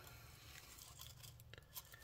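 Near silence, with a few faint ticks and rustles of hands handling plastic model hull parts.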